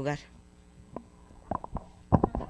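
A boy's voice finishing a word, then a faint lull with a few soft knocks from a handheld microphone being handled, the first about a second in and a quick pair about a second and a half in.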